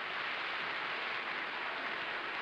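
Studio audience applauding, a steady dense clapping.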